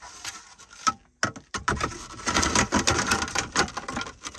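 Plastic interior trim clicking and rattling as it is handled and fitted around the gear shifter: one sharp click about a second in, then a busy run of small clicks and clatter.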